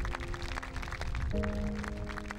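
Background music: held chords over a light, regular beat, the chord changing a little after halfway.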